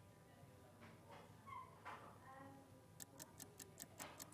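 Near silence: quiet studio room tone with a faint low voice about a second in, then a quick run of faint clicks, about seven a second, near the end.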